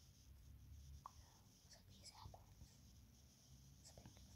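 Near silence, with faint handling rustles and a few soft clicks scattered through, the last just before the end.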